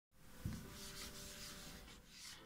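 A small cleaning wipe rubbed over the back of a phone, a soft uneven scratchy rubbing, with a light thump about half a second in.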